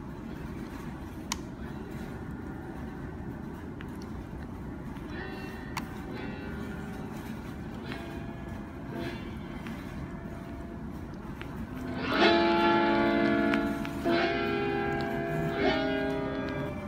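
A music sample playing back from the BeatMaker 3 sampler on an iPad. It begins quietly, with a low hiss and faint held notes, then about twelve seconds in two loud sustained chords sound, one after the other.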